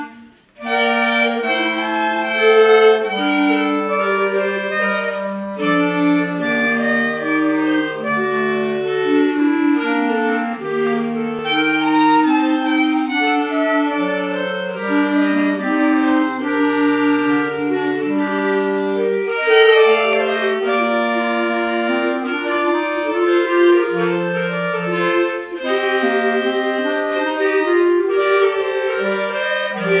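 A quartet of four clarinets playing together in parts, several lines of held and moving notes at once. There is a short break in the playing about half a second in, then it runs on without pause.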